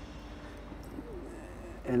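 Quiet background hum with a steady low tone, and a faint wavering bird call about a second in.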